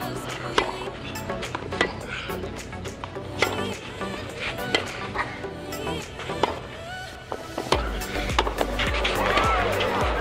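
Tennis rally: racket strokes on the ball, about one sharp pock every second or so, over steady background music. A louder swell of noise builds near the end.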